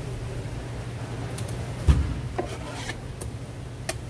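Knife and fish handled on a plastic cutting board: short scrapes and light knocks, with one heavy thump about two seconds in as something lands on the board.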